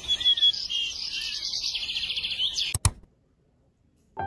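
Birds chirping: a run of short high chirps and a quick trill, over a light hiss. They cut off abruptly with a click about three seconds in, leaving silence.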